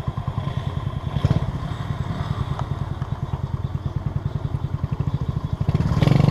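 Small single-cylinder motorcycle engine idling, with a quick, even pulse.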